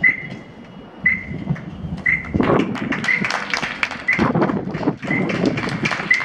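A short, high tone sounds about once a second, seven times. From about two seconds in it is joined by irregular taps and shuffling, as of feet on pavement.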